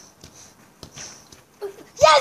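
A few faint, soft knocks of a football being headed, irregularly spaced, with a brief short vocal sound near the end.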